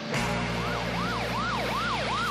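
A siren yelping, its pitch sweeping up and down about three times a second. It starts about half a second in, over steady low held music tones.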